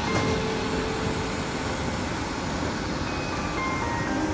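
Steady rumble of an airport apron bus heard from inside its cabin, with a thin, steady high-pitched whine running over it.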